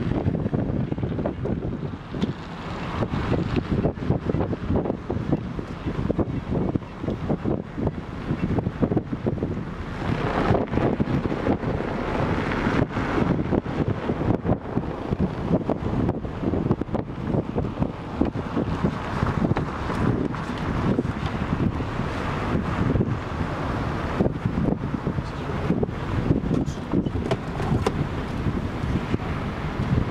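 Wind buffeting the microphone over the road noise of a moving car, in a steady, gusty rush with no clear rhythm.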